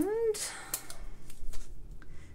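Hands handling black baker's twine and craft supplies on a tabletop: a short rustle and a sharp click about half a second in, then faint small ticks.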